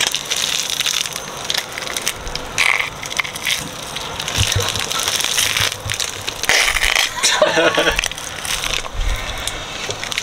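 Wet squelching and plastic crinkling as a plastic bag of creamy vegan jalapeño popper filling is squeezed by hand, pushing the filling out in ropes.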